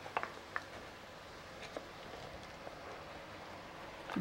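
Faint, steady simmering of chicken in a thick sauce in a wok, with a few light clicks in the first two seconds.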